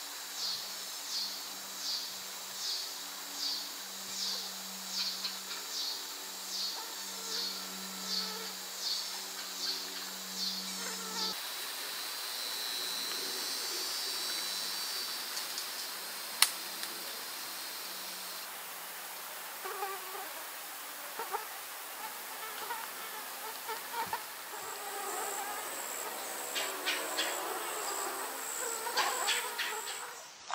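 Insects calling: a high chirp pulsing about twice a second over a low buzz, then a steady high buzz, then scattered chirps and clicks with a thin high whine near the end.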